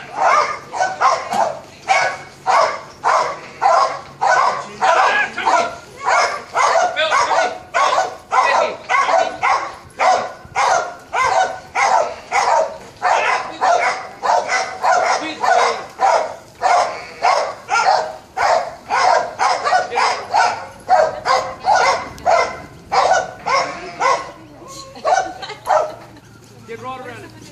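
A dog barking over and over, about two loud barks a second, keeping up a steady run that stops shortly before the end.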